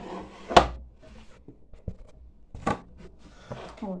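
Handling noise from gloved hands at a table: a sharp knock about half a second in, the loudest sound, another knock near three seconds, and rustling between them.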